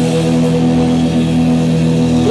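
A metal band playing live and loud: distorted electric guitars hold one long, steady chord.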